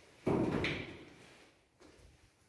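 Hinged metal landing door of a ZREMB passenger lift. A single bang about a quarter second in rings and fades over about a second, and a lighter knock follows near the end.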